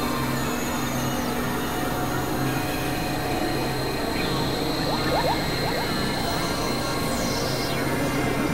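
Dense experimental electronic mix of several music tracks layered at once: a steady noisy wash with a low tone that pulses on and off, and thin sustained high tones. About five seconds in comes a quick run of short rising chirps, and near the end a high falling glide.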